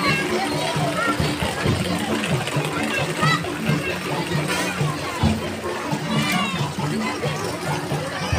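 Music with repeating low notes plays under the chatter and shouts of a crowd of children and adults.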